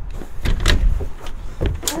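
A glass shop door being handled and pushed open: a low rumble with a few sharp clicks and knocks.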